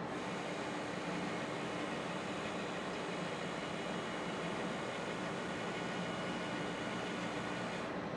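Stepper motor of an automated bottle-gauging machine's lift stage raising the turntable that carries the bottle: a steady whine of several thin high tones over a low machine hum, cutting off abruptly as the stage stops.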